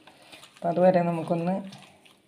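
A woman speaking briefly, the loudest sound, over faint sounds of dried bilimbi pieces being mixed by hand with spices in a steel bowl.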